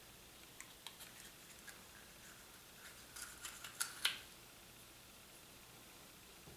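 Small plastic surprise-egg toy capsule being handled as a toy figurine is taken out of it: scattered faint clicks and rustles, with a cluster of sharper plastic clicks about three to four seconds in, the loudest near four seconds.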